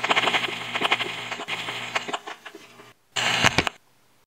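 Produced logo sting: a burst of rapid clicking and hiss that fades away over about three seconds, then after a short pause a second short, loud burst that stops abruptly.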